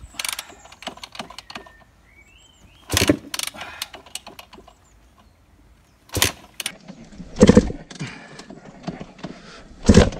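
Yamaha YZ250 two-stroke dirt bike being kickstarted several times: each kick a short clunk as the engine turns over, but it never fires and no running engine follows. The bike will not start.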